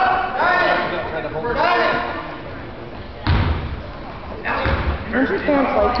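Voices shouting in an echoing gym, then a sudden hard thud about three seconds in and a second, weaker thud about a second later.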